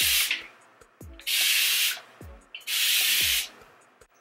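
Plastic spray bottle misting a section of curly hair: three separate hissing sprays, each under a second long, about a second and a half apart, each with a soft low thud just before it.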